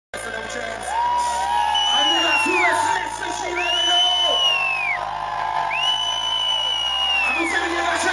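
Live band music: three long held lead notes, each bending down in pitch at its end, over a bass line that steps from note to note.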